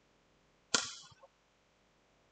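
A cricket bat striking the ball: one sharp crack about three-quarters of a second in, fading quickly, followed by a fainter knock.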